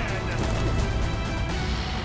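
Music score with a heavy, steady low end.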